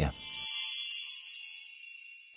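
High-pitched transition sound effect for an animated logo reveal: a steady hiss with several thin high tones above it, easing slightly toward the end.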